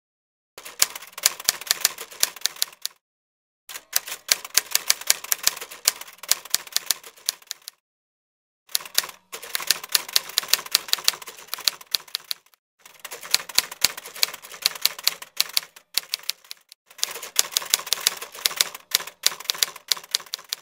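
Typewriter keys clacking rapidly in five runs of two to four seconds each, with brief silent pauses between them: a typing sound effect laid under on-screen text being typed out.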